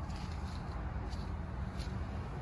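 Steady low rumble of outdoor background noise, with two faint soft rustles, one about a second in and one near the end.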